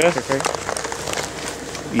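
A man's voice trailing off at the start, then rustling and handling noise with scattered clicks as the camera is moved about in gloved hands.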